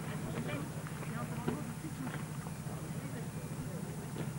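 Faint, distant voices of people talking over a steady low hum.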